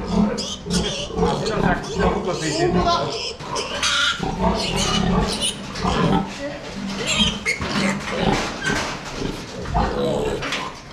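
Piglet squealing loudly and repeatedly while being caught and held by hand.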